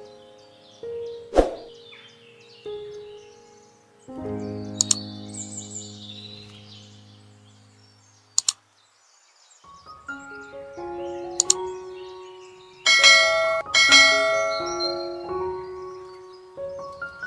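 Background music of soft, chime-like and mallet-like notes, dipping almost to quiet around nine seconds in and growing brighter and louder near the end. A quick double click, like a mouse-click sound effect, comes about eight seconds in.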